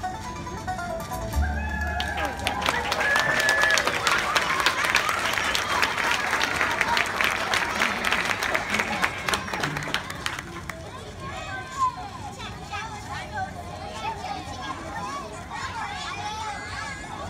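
Audience applause with a few cheers, starting about two seconds in and dying away after about ten seconds into crowd chatter.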